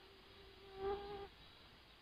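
A flying insect buzzing close to the microphone, one steady pitched buzz that swells to a peak just under a second in and cuts off about a second and a quarter in.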